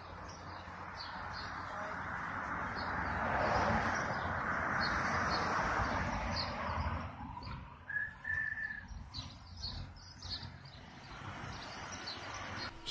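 Small birds chirping repeatedly, with a rushing noise that builds over the first few seconds, peaks, and fades about seven seconds in. A single short whistled note comes near eight seconds in.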